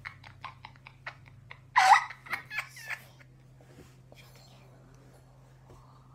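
Girls giggling in quick, short bursts, then a loud squealing laugh just under two seconds in, with a few more giggles after it.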